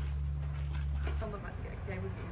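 A steady low hum that cuts off suddenly a little over a second in, followed by faint voices.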